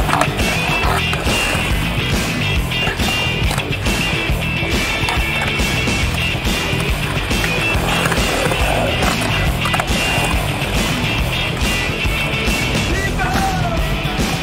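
Skateboard wheels rolling and carving on a concrete bowl, with sharp clacks from the board, under background music.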